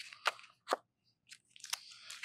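A few faint, short crackles and clicks from a clear plastic currency sleeve being handled as a paper note is swapped for the next.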